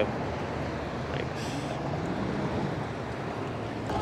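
Aniioki A8 Pro Max electric bike accelerating from a stop: steady wind noise on the microphone with road noise, and a faint hum rising in pitch as it picks up speed. There is a short hiss about a second and a half in.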